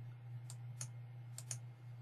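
Four faint, sharp clicks at a computer, at about half a second, just under a second, and twice close together around a second and a half in, over a steady low hum.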